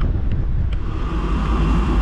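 Wind buffeting the camera microphone, a heavy low rumble. About a second in, a steady hiss joins it.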